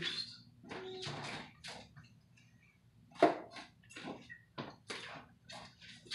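Scattered light clicks, knocks and rustles of kitchen items being handled, the loudest a sharp knock about three seconds in.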